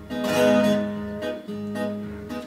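Acoustic guitar strummed alone, chords ringing, with a fresh strum about one and a half seconds in.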